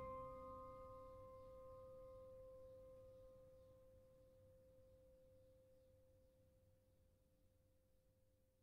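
The last held chord of an organ score fading away into near silence. One faint steady tone lingers after the rest has died out.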